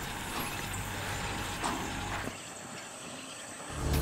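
Steady mechanical noise of an oil-field pumpjack running, growing quieter about two thirds of the way through.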